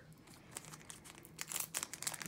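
Foil wrapper of a Pokémon card booster pack crinkling in the hands as it is torn open, the crackles sparse at first and busier in the second second.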